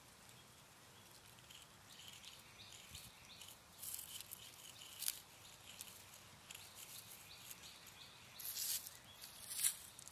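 Sidewalk chalk scraping on rough asphalt in short, irregular scratchy strokes, faint, with a few louder scrapes near the end.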